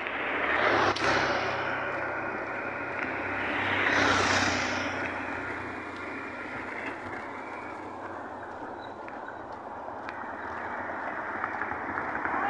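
Road traffic passing on a highway: one vehicle goes by about a second in and another around four seconds, each swelling and fading, over a steady rumble of tyres and engines.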